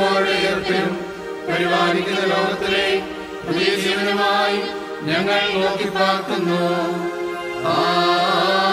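Mixed choir of women's and men's voices singing a liturgical chant, accompanied by an electronic keyboard, with a steady low note held underneath and the melody moving in long phrases.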